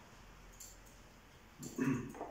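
Faint rubbing strokes of an eraser wiping a whiteboard. Near the end comes a short, louder pitched sound like a voice or a whimper.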